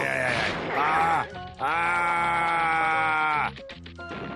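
A man's voice wailing in distress: a short falling cry, then one long held wail of about two seconds, over background music. A few quick knocks come near the end.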